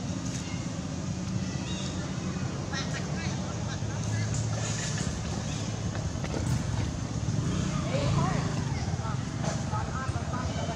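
A steady low rumble with indistinct voices in the background.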